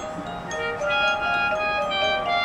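Marching band playing a soft passage of sustained chords. It dips quieter at the start, then new held notes come in about half a second in.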